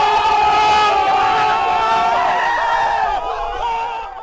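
A group of young people yelling and shrieking together in an excited reaction, many voices overlapping at once. It cuts off abruptly at the very end.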